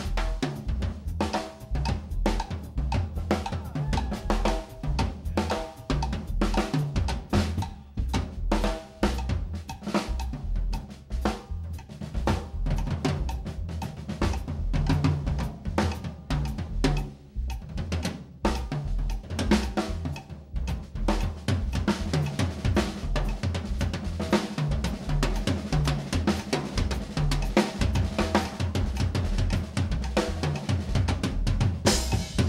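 Jazz drum kit played with sticks in a busy Latin jazz passage: quick snare and tom strokes, bass drum and cymbals.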